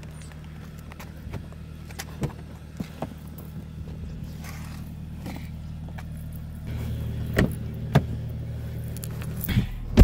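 Footsteps and jangling keys as someone walks up to a car and opens its door over a steady low hum, which gets louder once the door is open. Then clicks and knocks as she climbs in, and the car door slams shut with a loud thump at the end.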